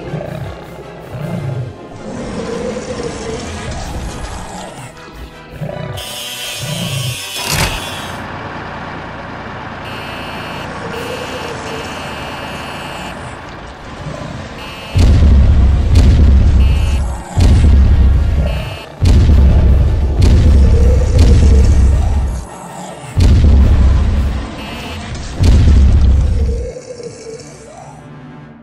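Background music, with a brief hissing burst about six seconds in; from about halfway, about six loud, deep booms a second or two apart, edited-in cannon-fire sound effects for the toy tank firing at the toy dinosaur.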